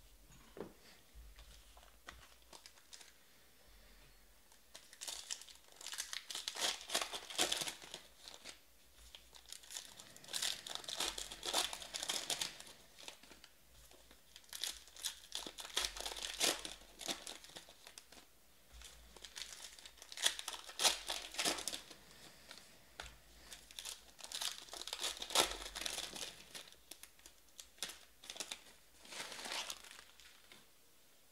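Trading-card pack wrappers being torn open and crinkled by hand, in about five bursts of crackling a few seconds apart with quiet gaps between.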